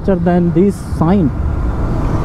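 KTM RC 125 motorcycle at highway speed: steady wind and road noise on the microphone, with the engine underneath. A man's voice is heard briefly in the first second or so.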